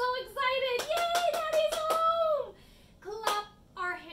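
A woman singing a line of a children's song unaccompanied, ending on one long held note. Under the held note comes a quick, even run of sharp hand claps, about five a second, and there is one more clap near the end.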